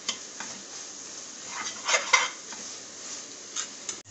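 Onion and tomato masala sizzling in an aluminium pressure cooker while a ladle stirs it, scraping and clinking against the pan a few times, loudest about two seconds in.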